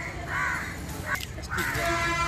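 A crow cawing, one call about half a second in.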